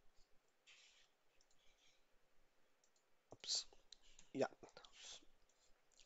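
Faint computer mouse clicks with quiet breathy muttering under the breath. A few short, louder clicks come in the second half.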